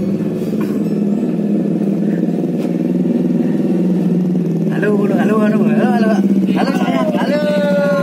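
A motor vehicle engine running with a steady hum, with a person's voice over it for a few seconds past the middle.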